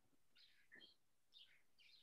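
Near silence: room tone, with a few faint, short high-pitched blips in the middle.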